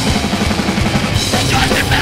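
Hardcore punk band playing live, loud and fast: distorted guitars over rapid drumming, with a shouted vocal coming in about halfway through.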